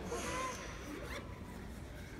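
A quiet pause: low, even background noise of a large hall with a few faint brief sounds and no clear voice.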